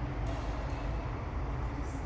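Steady low rumble of the hall's background, with two sharp racket hits on a badminton shuttlecock about a second and a half apart during a rally.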